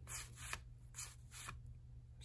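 Faint rustle of 1984 Donruss cardboard baseball cards being slid off a hand-held stack one at a time, about four short swishes roughly half a second apart.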